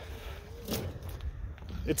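A pause in a man's talk over a steady low rumble, with a faint murmur and a couple of soft clicks. He starts speaking again just before the end.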